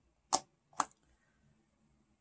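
Two sharp clicks about half a second apart: metal eyeshadow pans clicking against a magnetic Z palette as they are handled in it.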